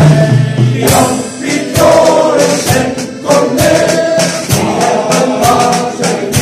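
Male fishermen's choir singing in unison, accompanied by a drum kit: regular drum and cymbal strikes under the voices.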